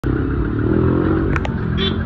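A motor vehicle engine idling close by, a steady low drone, with two sharp clicks about one and a half seconds in.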